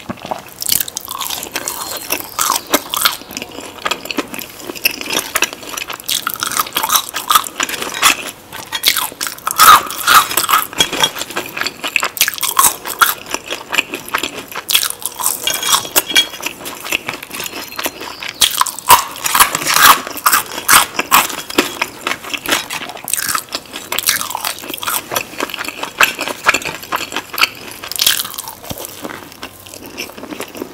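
Close-miked chewing and crunching of crispy fried fast food, a dense run of crackly bites and chews, loudest about ten and twenty seconds in.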